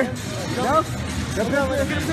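Two short bursts of men's voices and laughter over a steady background din of a busy crowd.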